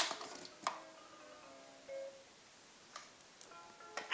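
A faint, simple electronic tune of short held single notes, the kind a musical toy plays, with a few soft knocks: one just under a second in and one about three seconds in.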